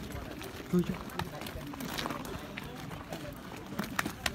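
A man's short shout about a second in, over the voices of a group of men outdoors, with a few sharp knocks scattered through.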